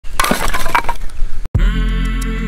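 Wood cracking and splintering as a knife is driven into a bundle of firewood to split off kindling: a quick run of sharp cracks and snaps. It cuts off suddenly about one and a half seconds in, and music begins.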